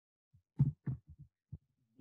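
Computer keyboard being typed on: a quick, uneven run of about six soft keystrokes, heard mostly as low taps.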